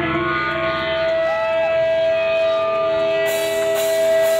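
Electric guitar feedback through a stage amplifier: one steady, whining tone held, with a brief pitch bend up and back about a second and a half in, over a lower sustained hum. A hiss of cymbals joins near the end.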